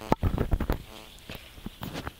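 A faint insect buzz, fading out in the first second, over scattered clicks, rustles and low knocks of people moving among the maize plants.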